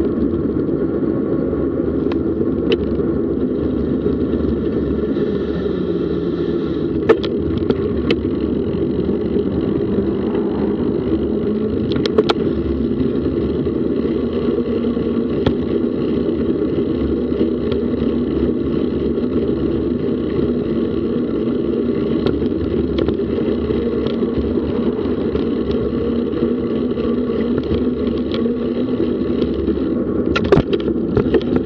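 Steady rumble of a vehicle travelling along a road, with a few sharp clicks, the clearest about 7 and 12 seconds in.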